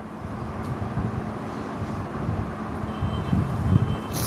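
Steady low rumbling background noise with a faint hum, and a thin, high beeping tone that comes in twice near the end.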